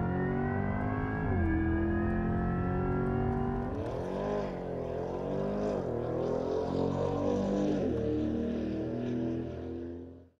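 Corvette E-Ray's 6.2-liter V8 accelerating hard, its note climbing, dropping back at an upshift about a second in and climbing again. From about four seconds in the engine note rises and falls unevenly, and it fades out at the end.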